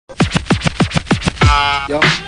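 Turntable scratching in a hip-hop track: a quick run of about nine strokes, roughly six a second, each sweeping down in pitch, then a held pitched note that slides down near the end.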